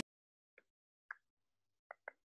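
Faint computer mouse clicks: four short, sharp clicks about half a second apart, in near silence.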